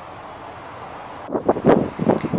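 A steady background hiss. About a second and a half in, it gives way to loud, irregular gusts of wind buffeting the microphone.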